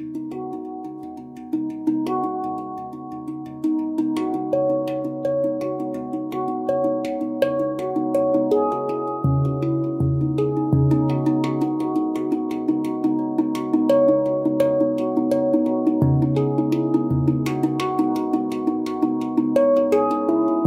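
Handpan played by hand in a slow improvisation: struck steel notes ring on and overlap one another. About halfway through, a deep low note joins, struck again every second or so in pairs.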